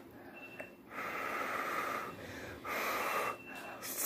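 A person slurping instant stir-fry noodles off chopsticks: two hissing slurps, the first about a second long and the second shorter.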